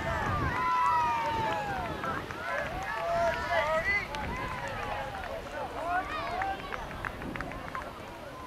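Several voices shouting and calling out across the soccer field at once, overlapping, with long drawn-out calls loudest in the first half. A few short, sharp knocks come near the end.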